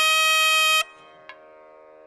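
Nadaswaram (South Indian double-reed temple pipe) holds one long, bright note that cuts off abruptly just under a second in, leaving only a quiet steady drone beneath.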